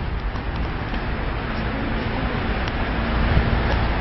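Steady city-street background noise: a low rumble with hiss, as of traffic, with a faint steady hum through the middle.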